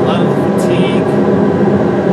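A recording of two industrial fans played as white noise: a loud, steady fan drone with a few constant hum tones in it. Brief faint hisses sound in the first second.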